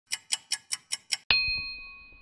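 Clock-tick and chime sound effect: six quick, even ticks, about five a second, then a single bright ding about a second and a quarter in that rings on and fades.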